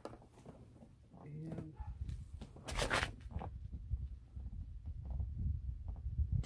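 Fabric seat-back organizer and its straps rustling and being handled as it is fitted over a pickup's headrest. There is a short, sharper rustle about three seconds in, over a low rumble.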